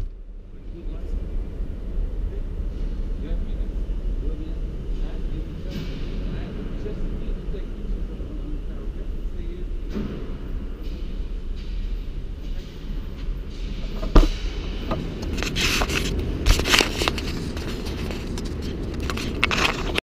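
A low steady rumble, then a single sharp knock about fourteen seconds in. It is followed by several seconds of rustling, knocks and thuds as the camera is picked up and moved.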